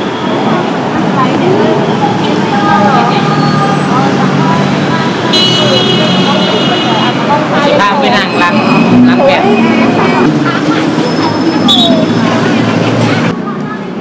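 Busy city street ambience: road traffic running below, with many people talking indistinctly around. A high steady tone sounds for about a second and a half near the middle, and the background turns duller abruptly near the end.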